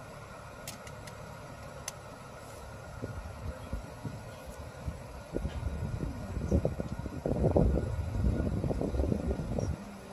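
A stopped vehicle's engine idling with a steady low hum; from about halfway through, uneven low rumbling grows louder over it.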